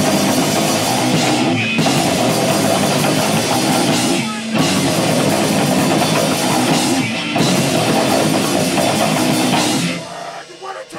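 Live rock band playing loud: distorted electric guitar, pounding drum kit and shouted vocals. The band breaks off briefly about every three seconds, then stops suddenly at the end.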